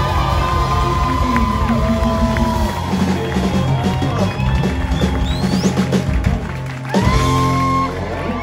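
Live band playing a rock-blues number on electric guitars, bass and drums, with sustained guitar notes; a loud, held chord comes in about seven seconds in.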